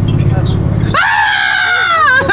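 Steady low road rumble inside a moving car, then about a second in a loud, high-pitched scream, one long held cry that falls slightly in pitch and wavers as it ends.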